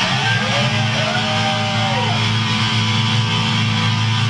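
Black metal band playing live: distorted electric guitar and bass hold a low, droning note while a guitar line bends up and down above it in the first two seconds, with no drums heard.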